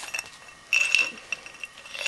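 A small glass jar clinking a few times as it is handled, with one short ringing note a little under a second in.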